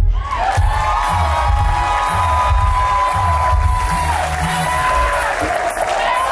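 Audience cheering and whooping, with long held high-pitched shrieks, as the bachata music stops at the very start.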